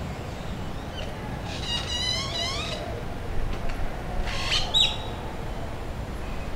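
Bird calls over a steady low background rumble: a drawn-out squawking call about two seconds in, then a shorter, sharper call near the end.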